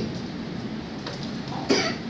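A single brief cough about three-quarters of the way in, over low room noise in a pause between sentences.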